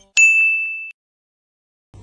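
A single high, bell-like 'ding' sound effect: one sharp strike with a clear steady tone that fades out in under a second.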